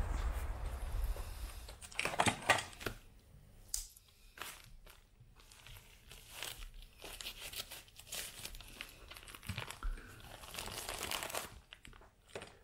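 A padded mailer envelope being slit open with a pocket knife and unpacked: irregular bursts of crinkling and tearing packaging, with paper packets rustling near the end.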